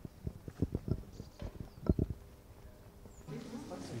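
Hard footsteps on stone paving: a run of sharp, irregular knocks over the first two seconds, like boots walking on cobbles.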